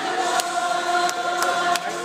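A crowd of children and adults singing together in a large room, holding one long note, with sharp beats about three times a second.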